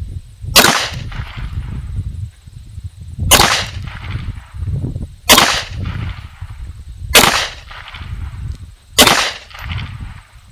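Five single pistol shots from a .380 ACP handgun firing 95-grain Magtech full metal jacket rounds, spaced about two seconds apart, each with a short echo tail.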